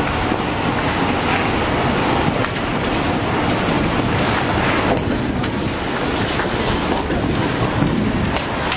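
Loud, continuous rushing rumble in the aftermath of a large explosion as the dust cloud rolls out, with a few faint knocks from falling debris.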